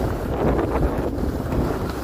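Wind rushing over the microphone of a camera carried by a skier going downhill, a steady low noise, with the hiss of skis sliding on packed snow beneath it.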